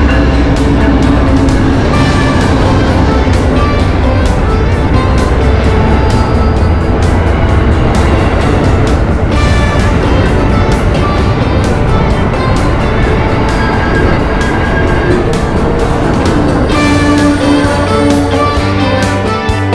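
Background music with a steady beat, over the low rumble of an Amtrak passenger train rolling slowly past a station platform.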